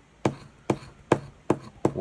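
A coin scratching the latex coating off a paper scratch-off lottery ticket in five short, sharp strokes, about two a second.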